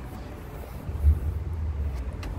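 Low, steady rumble of road traffic that grows louder about a second in and holds.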